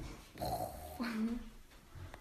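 Two short vocal cries in quick succession, the second lower in pitch and falling slightly.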